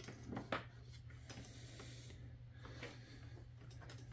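Quiet handling of multimeter test leads: a couple of light clicks about half a second in and soft rubbing, over a low steady hum.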